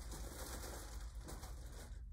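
Crinkly rustling of a fabric cat tunnel as a cat moves through it. The rustling stops abruptly just before the cat steps out.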